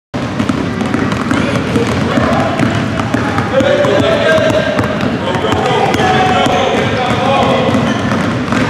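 Many basketballs being dribbled at once on a hardwood gym floor, a dense patter of bounces, with overlapping indistinct voices of girls and coaches underneath.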